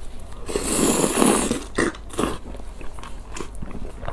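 Mouth noises of someone eating spicy noodles in broth: about half a second in, a loud slurp lasting about a second as the noodles are drawn in. Wet chewing and short lip smacks follow.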